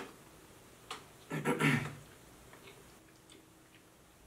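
Quiet chewing and mouth sounds as two people eat a soft cake snack, with a click about a second in and a short hummed voice sound at about a second and a half, then a few faint ticks.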